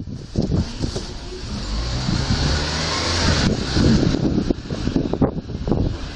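A small flatbed kei truck passing close by and driving on ahead, its engine running steadily. The sound swells in the middle and drops away suddenly after about three and a half seconds.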